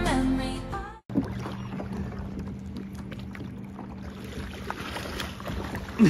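Music fades out about a second in, giving way to the sound of a kayak on calm water: small splashes and drips of water against the hull, with a faint steady low hum underneath.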